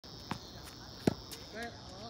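Two sharp pops of a tennis ball struck with a racket, the second much louder, over the steady high chirring of crickets. A short voice sounds near the end.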